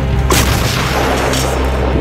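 An artillery howitzer fires one shot about a third of a second in, a sudden loud blast, followed by a fainter report about a second later. Steady background music plays underneath.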